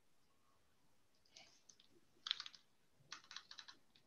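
Near silence broken by three short clusters of faint, quick clicks, starting about a second in, the middle cluster the loudest.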